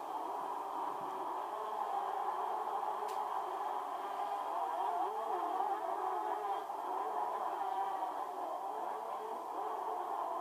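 A field of 125 cc supercross motorcycles revving and racing, heard through a television's speaker, the engine pitch rising and falling.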